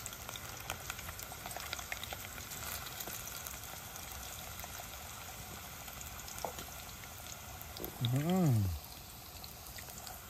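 Potato slices frying in oil in a cast-iron pot over a wood fire: a steady low sizzle with scattered small crackles as a knife turns them in the pan. A short voice sound, rising then falling in pitch, about eight seconds in.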